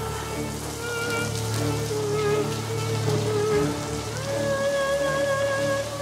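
Background drama score of sustained, held notes that step up to a higher pitch about four seconds in, over a steady hiss.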